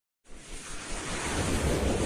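Whoosh sound effect of an animated logo intro: a rushing noise that starts about a quarter second in and swells steadily louder.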